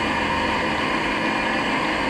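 Steady running noise of a moving vehicle, heard from an onboard camera, with several constant whining tones over an even rumble and no change in pitch.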